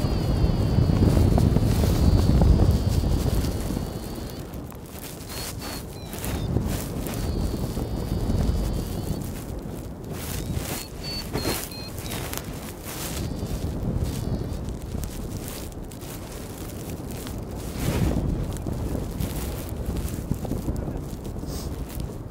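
Wind buffeting the microphone in flight, a heavy low rumble strongest for the first four seconds, then gusting more lightly, with scattered sharp clicks and rustles.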